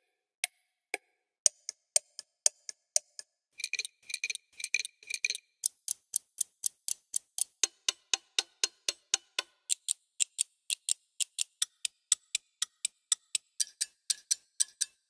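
Sampled pocket-watch ticking played as looping, tempo-synced patterns from Sonokinetic's The Watchmaker sample library. Sparse single ticks at first, then several watch patterns layered into a dense, even ticking of about four ticks a second from about four seconds in.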